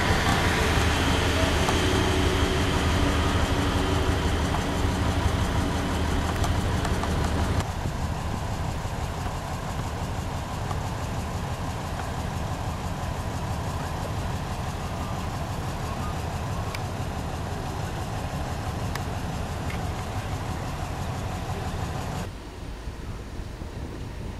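Büssing underfloor diesel engines of a VT 798 railbus running with a steady low drone, louder for the first seven or so seconds. Two sharp edits about seven seconds in and near the end each cut to a quieter run.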